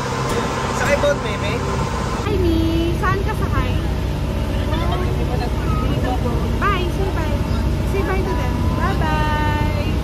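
Outrigger bangka boat's engine running steadily under way, a constant low drone, with a person's voice heard over it.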